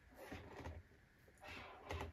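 Faint sliding and rubbing of a cardboard advent-calendar box being opened, in two short soft stretches.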